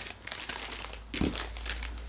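Small plastic action-camera mount parts being picked up and handled on a desk: a string of light plastic rustles and clicks, with a soft knock about a second in.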